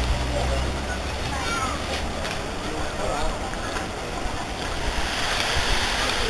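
Outdoor street ambience with faint chatter of passers-by over a steady rush of wind and background noise.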